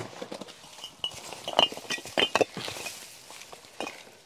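Irregular knocks, scrapes and light metallic clinks as a corrugated steel roofing sheet is shifted and set down over sandbags and bricks, with a cluster of sharper knocks in the middle.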